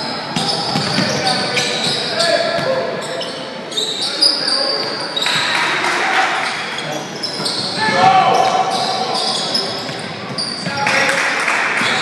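Basketball game in a gym: spectators shouting and calling out over one another, with a ball bouncing on the hardwood, all echoing in the large hall.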